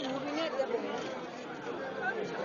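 People talking over one another, with a laugh about a second in.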